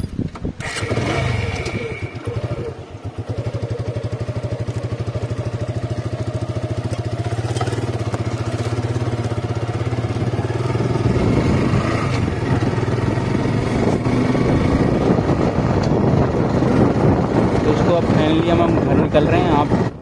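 A motorcycle engine starts and, after an uneven first few seconds, settles into a steady run as the bike rides off.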